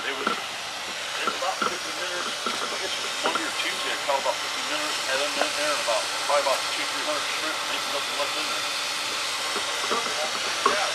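A steady hiss runs under indistinct voices talking, the voices mostly in the middle of the stretch.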